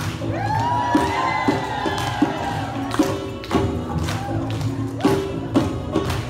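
Djembe hand drumming in a steady beat, with a long high voice call held for about two seconds near the start.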